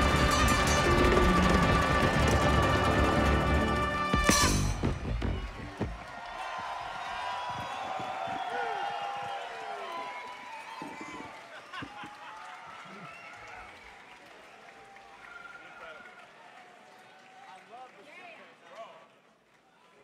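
Funk band with a horn section playing the last bars of a song, ending on a sharp final hit about four seconds in. A live audience then cheers and shouts, fading away to near quiet by the end.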